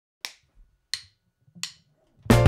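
Three finger snaps, evenly spaced about 0.7 s apart, counting in the band.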